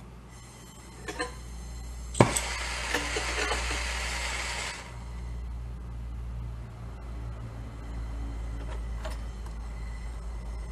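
Jeweller's gas torch being lit: a couple of small clicks, then a sharp pop about two seconds in, a loud hiss of gas for about two and a half seconds, and after that a steadier, lower rush of the burning flame.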